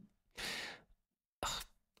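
A man's single audible breath taken in at the microphone during a pause in his speech, about half a second long and soft, followed by a briefer faint breath noise near the end.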